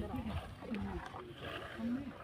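Men's voices shouting short, repeated calls across a kabaddi court, with one call repeated over and over.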